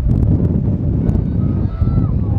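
Heavy wind buffeting the microphone, with a cluster of sharp metallic clanks just after the start as the starting gate springs open for the horses. A voice starts calling near the end.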